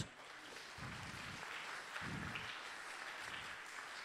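Audience applauding, steady and faint.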